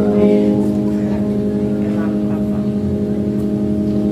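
Hammond-style electric organ holding a steady sustained chord.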